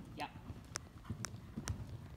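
Horse's hooves striking soft sand arena footing at a canter: dull thuds with a sharp click about every half second.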